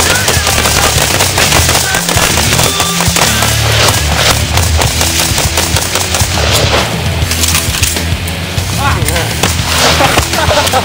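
Several guns, rifles among them, fired together in a rapid, continuous volley of shots, with heavy rock music playing over it.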